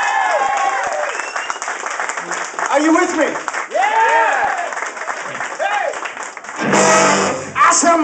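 Live blues band playing an instrumental passage between vocal lines, a lead instrument bending its notes up and down, with audience clapping and cheering over it; the band swells louder near the end.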